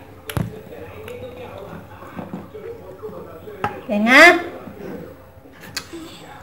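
A person's voice: a short wordless vocal sound rising steeply in pitch about four seconds in, the loudest thing here, with a sharp click near the start and a few faint clicks.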